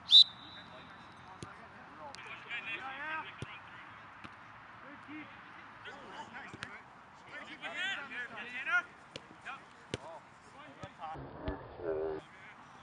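A referee's whistle blast just after the start, one short high steady tone. It is followed by players' distant shouts on the field and scattered sharp knocks of a soccer ball being kicked.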